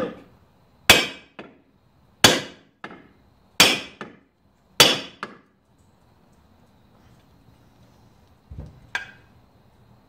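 A brass hammer gives four light taps about a second and a half apart on a steel punch, driving a ball bearing into a Stihl 028 chainsaw crankcase half. Each blow is followed by a smaller rebound tick. A couple of softer knocks come near the end.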